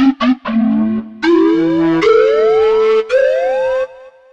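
UVI DS1 software synthesizer playing its 'Pana Dubstep' preset: three short stabs, then four held notes stepping up in pitch, each with rising sweeps through its overtones. The sound dies away just before the end.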